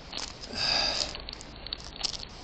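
A short breathy hiss close to the microphone about half a second in, followed by faint rustling and small clicks of handling.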